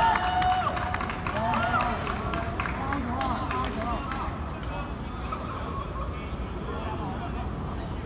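Players' voices calling and shouting across an outdoor football pitch, loudest in the first few seconds, with scattered sharp clicks over a steady low background rumble.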